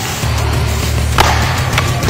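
A sharp crack of an inline hockey stick striking the plastic ball, a little over a second in, over background music with a steady bass line.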